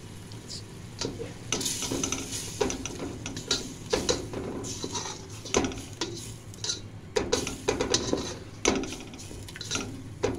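A spatula stirring and scraping blended onion paste around a pan of hot oil, in irregular strokes, with the paste sizzling as it fries.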